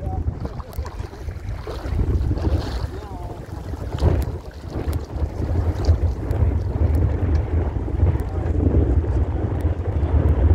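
Wind buffeting the microphone as a steady low rumble, over small waves lapping in shallow sea water; a short sharp click sounds about four seconds in.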